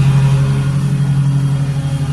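A motor running with a steady, loud low hum that does not change.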